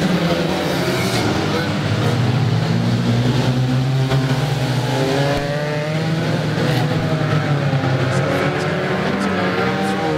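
Several banger racing cars' engines running and revving together, their pitches rising and falling and overlapping as they pass. A few sharp knocks are heard along the way.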